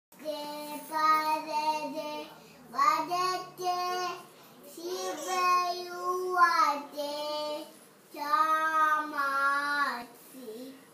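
A young girl singing alone with no accompaniment, in four long phrases of held, wavering notes with short pauses between them.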